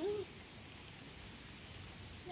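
A single short voice-like note, a brief rise and fall, right at the start, followed by faint steady outdoor background noise.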